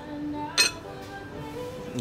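Background music with held notes, and a single sharp clink about halfway through: chopsticks knocking against a small ceramic bowl.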